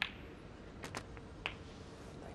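A few sharp clicks of snooker balls and cue on the table, starting a little under a second in, with one more about half a second later.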